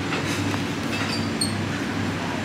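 Steady low hum over a noisy rumble, with a few faint clicks and short high clinks about a second in.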